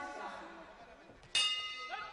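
Boxing ring bell struck once about a second and a half in, ringing on and slowly fading: the bell marking the end of the round.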